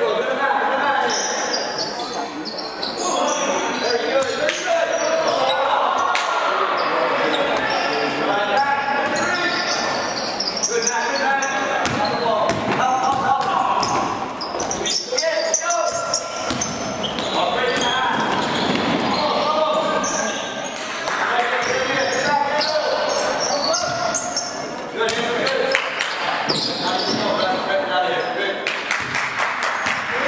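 Basketball game in a large, echoing gym: indistinct voices of players and spectators throughout, with the ball bouncing on the hardwood floor and other short knocks of play.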